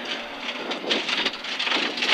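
Rally car driving fast on a loose gravel road, heard inside the cabin: a dense hiss of tyres and gravel thrown against the underbody and wheel arches, with scattered small ticks of stones.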